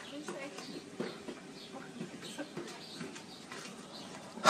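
Faint, indistinct talking with scattered light clicks and a few faint high squeaks.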